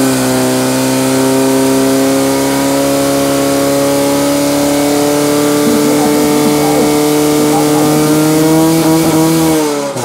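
Portable fire-sport pump's petrol engine running flat out at a steady high pitch while it pumps water through the attack hoses. Its pitch falls just before the end as it is throttled back.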